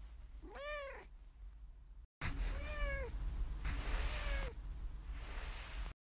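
Domestic cat meowing three times, each meow rising and then falling in pitch, the third fainter. A loud hiss runs under the later two meows.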